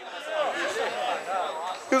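People talking in the background, several voices overlapping, with no close-up speech.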